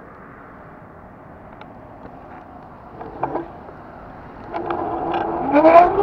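City bus passing close by: a faint steady background hiss, then its engine and drive whine swell over the last second and a half with gliding tones, loudest at the end as it goes past.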